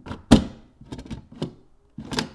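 Hard plastic knocks and clicks of a Ubiquiti U6-LR access point being fitted to its ceiling mount: one loud knock soon after the start, then a quick run of lighter clicks.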